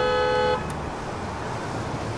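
A car horn sounds one short toot, well under a second, then road traffic continues underneath.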